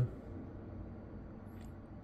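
Quiet room tone: a low steady hum with no distinct sound event.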